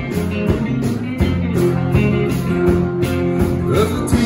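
Live band playing a rock-country song: strummed acoustic guitar, electric guitar and a drum kit keeping a steady beat.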